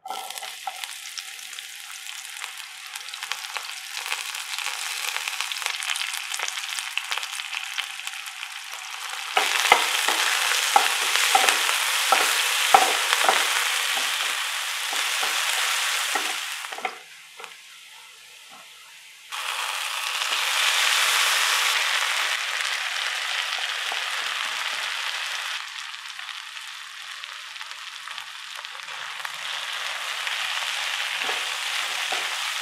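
Sliced onions and curry leaves sizzling as they fry in hot oil in a nonstick pan. The sizzle starts suddenly as the onions hit the oil, and there is a run of knocks and scrapes from a wooden spatula stirring them in the middle. It drops low for a couple of seconds past the middle, then picks up loud again.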